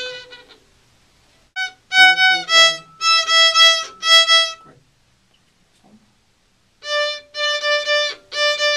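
Violin played with a bow by a beginner: a run of short, separate bowed notes on a few pitches. There is a pause of about two seconds, then another run of notes begins near the end.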